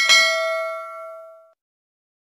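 A notification-bell 'ding' sound effect, struck once and ringing out with a bright chime that fades away over about a second and a half.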